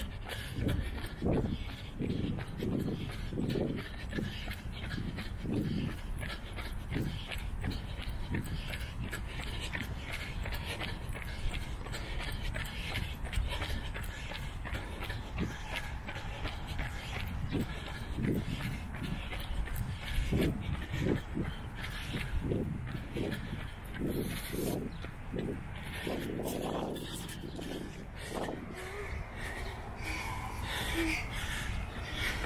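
A runner's heavy breathing close to the microphone while running, repeated breaths over a steady low rumble.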